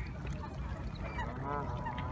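A single goose-like honking call that rises then falls in pitch, about a second and a half in, over a steady low rumble.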